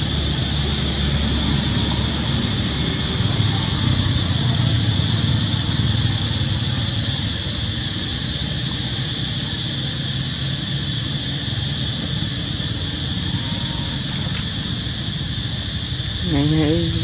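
Steady, high-pitched insect drone with a constant low rumble underneath.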